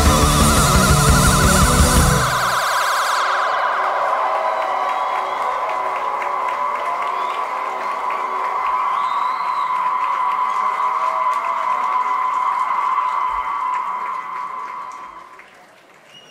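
Live electronic band music: the full band with drums and bass stops about two seconds in, leaving a single sustained high tone ringing on, which fades out near the end.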